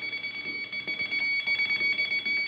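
Steady high-pitched whine of several fixed tones over a faint hiss: background noise of an old 1951 radio broadcast recording.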